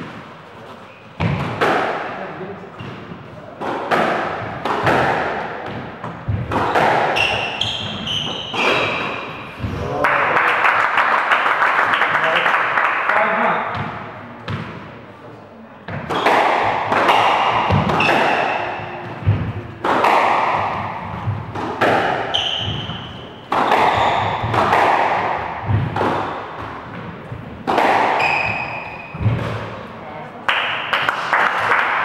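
Squash rally: a rubber squash ball is struck by rackets and thuds off the court walls again and again, at an irregular pace, with short high squeaks from shoes on the wooden floor. The loudest part is a spell of dense noise from about ten to fourteen seconds in.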